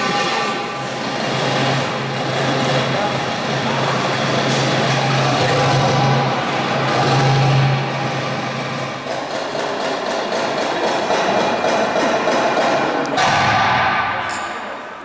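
Oriental belly-dance music driven by darbuka (goblet drum) playing, over a steady low drone that drops out about two-thirds of the way through. A short melody with held notes sounds near the end.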